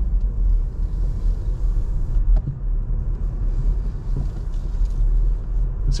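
Steady low rumble of a car's engine and tyres heard from inside the cabin as the car pulls away at low speed.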